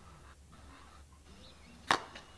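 A basketball striking asphalt: one sharp, loud smack near the end, over faint hiss.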